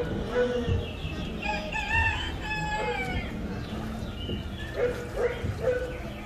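Recorded farmyard sound effect of a rooster crowing and hens clucking, played through the ride's speakers: several gliding calls, mostly in the first half, over a steady low hum.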